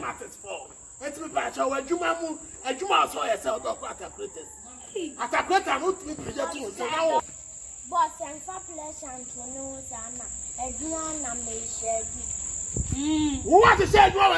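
People talking in conversation over a steady high-pitched chirring of insects that runs on without a break.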